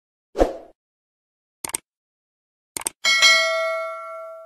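Stock subscribe-button sound effects: a brief swoosh, two quick double clicks like a mouse button, then a notification-bell ding about three seconds in that rings on and fades.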